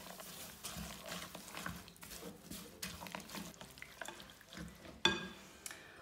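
Silicone spatula stirring a wet mixture of oats, seeds and whole nuts in a glass bowl: irregular scraping and rustling, with one sharp knock about five seconds in.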